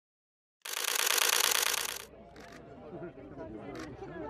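About half a second in, a loud, dense rattling noise lasts about a second and a half; then a crowd chatters, with a couple of short sharp clicks.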